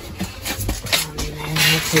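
Epson EcoTank ET-16600 printer mechanism running, with light clicks and then a steady motor hum from about a second in, alongside paper being handled on its tray.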